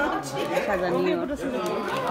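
Only speech: several people talking over one another in conversational chatter.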